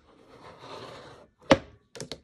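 Clear acrylic ruler scraped across freshly glued paper on a box, used in place of a bone folder to smooth it down, then a sharp click about a second and a half in.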